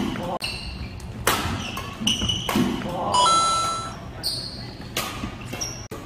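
Doubles badminton rally in a large hall: racket strikes on the shuttlecock about every second, with sneakers squeaking on the wooden court. One longer high squeal comes a little past the middle.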